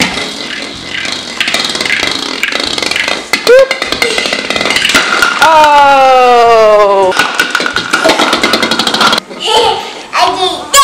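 Children's excited voices: a quick rising squeal, then a long falling 'ohhh' about halfway through, over knocks and clatter of plastic toy bowling pins and ball on a tile floor.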